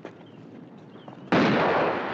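A sudden loud blast on a hillside about one and a half seconds in, throwing up a cloud of dust, followed by a long noisy tail that fades slowly. It is the hill being 'salted' with gold.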